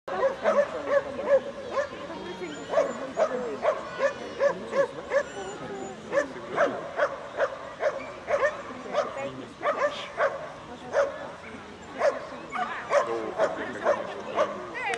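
A dog yipping and barking over and over, short high calls about two a second, kept up without a break.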